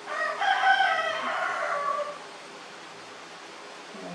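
A rooster crowing once, a single loud call of about two seconds that slides down in pitch at the end.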